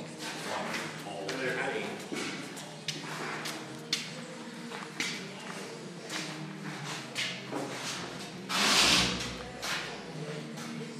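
Indistinct voices with scattered knocks and taps. A loud burst of noise lasting under a second comes about nine seconds in.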